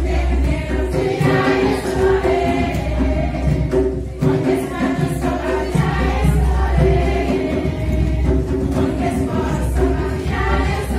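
Choral music: many voices singing together over a steady, pulsing bass line.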